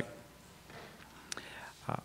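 A pause in speech over a microphone: low room tone, one short click a little past halfway, and a breath just before the man speaks again.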